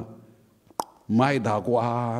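A man's voice speaking into a microphone, resuming after a pause of about a second. A single short click comes just before the speech.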